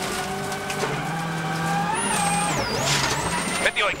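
Ford Focus RS WRC rally car's turbocharged four-cylinder engine running hard at high revs, heard from inside the cabin, with a high-pitched transmission whine over it. About two and a half seconds in, the revs and the whine dip and climb again as the car slows for a left-hander and pulls away, with a short rush of gravel and tyre noise.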